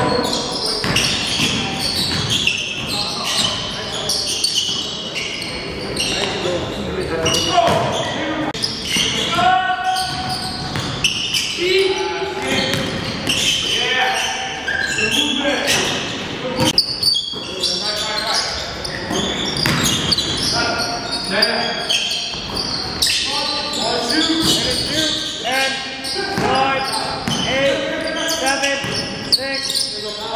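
A basketball bouncing on a hardwood gym floor during live play, with players' voices echoing through a large gymnasium.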